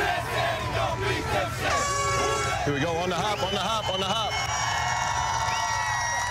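A group of football players shouting and calling out together, many men's voices overlapping, some calls held long.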